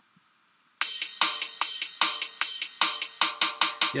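GarageBand's Rock Kit software drum kit playing back a programmed beat of hi-hat, snare and bass kick, starting about a second in. It ends in four quicker snare hits meant as a snare roll, which come out too slow to sound like a real roll.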